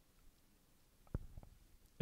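Near silence: room tone during a pause in speech, broken by one faint short click a little past a second in.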